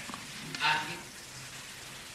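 Steady hiss and faint crackle of an old lecture recording, with a brief spoken "yes" about half a second in.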